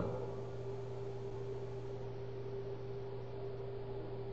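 A steady low hum with a constant higher-pitched tone over an even hiss, unchanging throughout.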